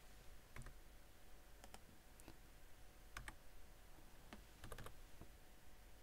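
Faint computer mouse and keyboard clicks, a few scattered single clicks over quiet room tone, as symbols are copied and placed in schematic software.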